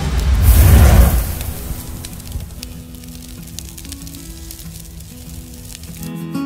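Cinematic intro sound effect: a loud, rumbling burst in the first second and a half that fades into quieter sustained synth notes.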